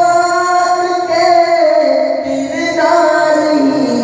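A man singing an Urdu naat (devotional poem in praise of the Prophet) solo into a microphone. He holds long, ornamented notes that bend in pitch and slide lower near the end.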